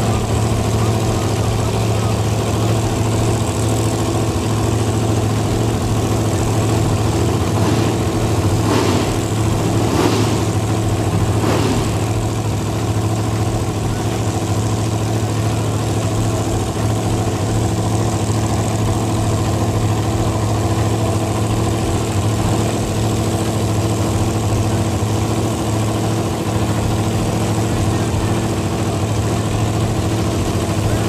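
Drag-racing car engine idling loudly and steadily, with three short sweeps in pitch about a third of the way in.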